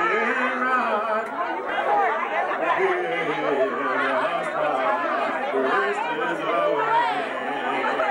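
Several people talking at once, a jumble of overlapping voices with no single speaker standing out.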